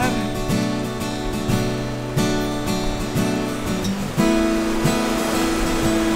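Steel-string acoustic guitar strummed in a steady rhythm without singing, with a louder change of chord about four seconds in.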